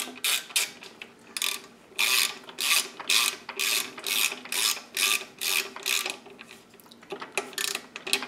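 Ratcheting torque wrench being worked back and forth in short strokes, about two a second, tightening a pivot bolt on a Giant Maestro suspension link to 11 newton metres.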